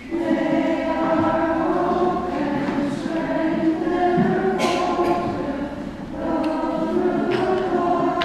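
A choir singing a liturgical hymn in long held notes, phrase after phrase, with short breaths between phrases about four and a half and six seconds in.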